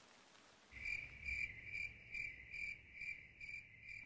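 Faint cricket chirping: a high, clear chirp repeating steadily about two and a half times a second, starting about a second in.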